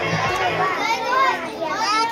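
Children's high-pitched voices calling out and chattering. The backing music fades out in the first half second.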